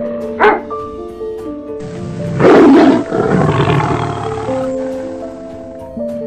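A tiger's roar about two seconds in, loud and lasting about a second before trailing off, over background music of sustained notes. A short sharp burst comes just after the start.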